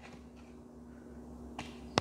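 Quiet room tone with a faint steady hum, and a couple of small clicks near the end as tarot cards are handled.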